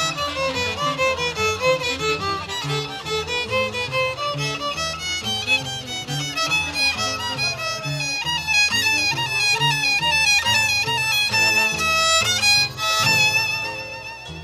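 Live Andean band playing the instrumental introduction to a song: a violin carries the melody over saxophones and a steady, rhythmic bass line.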